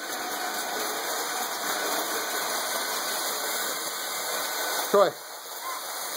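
Lionel electric toy train running on its metal track close by, a steady whirring rumble of motor and wheels that swells slightly as it nears.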